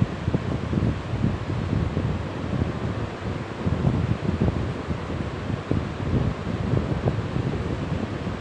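Low, uneven rumble of air noise buffeting the microphone, pulsing in strength.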